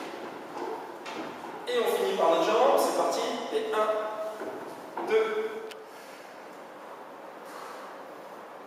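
Speech: a voice talking for a few seconds, followed by about two seconds of quiet room tone.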